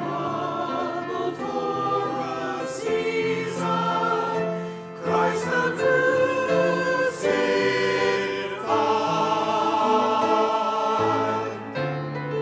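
Mixed church choir singing in parts, men's and women's voices together in held chords, with a short breath about five seconds in.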